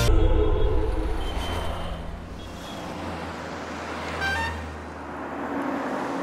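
Road traffic ambience over a steady low hum, with a short car horn toot about four seconds in.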